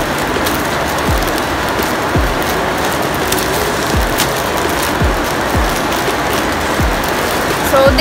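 Steady hiss of heavy rain outside, with background music under it whose low thumping beat comes about once a second. Faint plastic rustling as a mailer pouch is opened.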